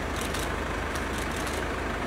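A large SUV's engine running at low speed close by: a steady low rumble with an even throb.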